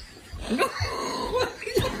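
A person's coughing laughter, broken up by a short spoken "why did you?".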